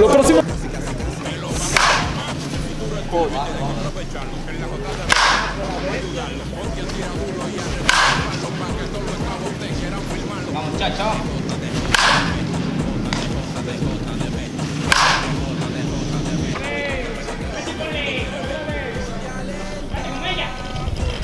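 Wooden baseball bat hitting pitched balls in batting practice: five sharp cracks, a few seconds apart.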